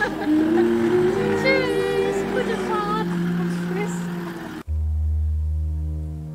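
Music with voices over it, then an abrupt cut near the end to a low, steady held chord.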